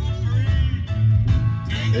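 Music from the 2021 Mazda CX-5's car stereo playing inside the cabin, with a heavy bass line, turned up to test the sound system.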